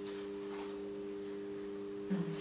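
Steady low electrical hum made of a few pure tones, unchanging, with no other sound over it.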